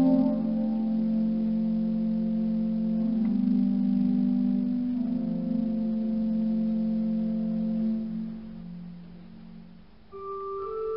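Pipe organ holding soft, sustained low chords in a large vaulted church, the harmony shifting about three and five seconds in. The sound dies away over the last two seconds.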